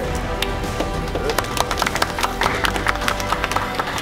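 A small group of people clapping by hand, irregular claps that thicken after about a second. Background music with steady held tones plays underneath.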